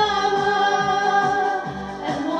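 A woman singing one long held note into a handheld microphone over a backing track with a steady beat, the note easing off near the end.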